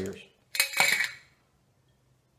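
Metal screw cap of a small glass mason jar scraping and clinking against the jar as it is opened, one short burst about half a second in.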